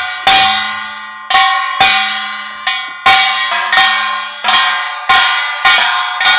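Kkwaenggwari, the small Korean brass gong, struck with a mallet about ten times in a loose rhythm of single and paired strokes. Each stroke is bright and metallic and rings on, fading before the next. This is the teacher's demonstration of the 'geurang-gaeng' stroke.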